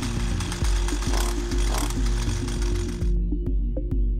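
McCulloch petrol trimmer's two-stroke engine running with the choke in the run position, a dense rapid rattle that cuts off suddenly about three seconds in. Steady background music plays underneath throughout.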